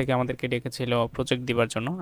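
Only speech: a man talking steadily in Bengali, narrating.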